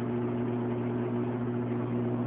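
Steady hum of an aquarium pump, one low, even tone with a faint hiss behind it.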